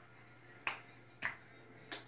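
Three sharp clicks at an even pace, about two-thirds of a second apart.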